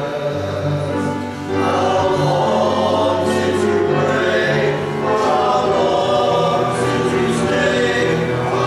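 Small choir singing a gospel song in harmony, with a low bass part held under the upper voices.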